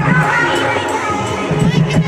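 A dense crowd shouting and cheering over loud music with a heavy bass line. The bass fades partway through and comes back near the end.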